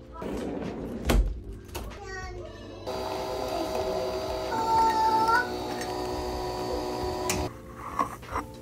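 A thump about a second in, then a pod coffee machine brewing into a mug: a steady hum with a brief higher wavering tone in the middle, cutting off abruptly near the end as the brew finishes.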